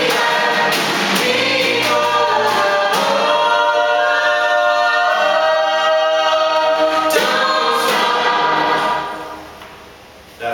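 Four-part vocal harmony of men and women singing, with a sharp hit about once a second over the first few seconds. From about three seconds in the voices hold one long final chord, which fades out about nine seconds in.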